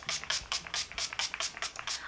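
Pump-spray bottle of matte makeup setting spray misting onto the face: a quick run of short hissing spritzes, several a second.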